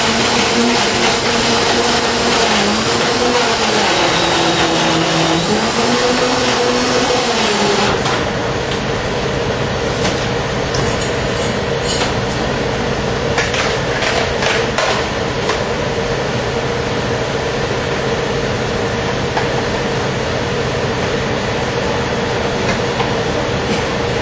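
Countertop blender blending an iced coffee frappé with banana and milk. The motor's pitch wavers and shifts for about the first eight seconds as it works through the ice, then it runs steady once the mix turns smooth. A few sharp knocks come in the middle.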